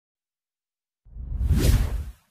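Whoosh transition sound effect that swells in about a second in, with a deep rumble under a rising hiss, loudest near the end.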